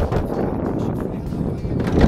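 A knock on the metal sliding side door of a small camper van, then the door being slid open, over wind on the microphone.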